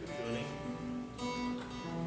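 Acoustic guitar strings plucked one note or chord at a time and left to ring while the guitar is being tuned.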